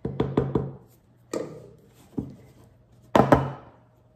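Sharp knocks from kitchen utensils striking baking ware, each ringing briefly: a quick run of about four at the start, single knocks in the middle, and a loud double knock near the end. These are a batter spatula and spoon tapped and set down against a loaf pan and a steel mixing bowl.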